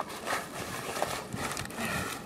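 Sailcloth rustling and scraping as hands gather and grip the folds of a reefed sail.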